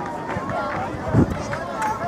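Shouting voices of players and sideline spectators at a rugby match, heard at a distance, with a dull thump a little after a second in.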